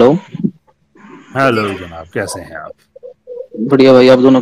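A person's voice making short wordless sounds in three stretches, the last and loudest near the end.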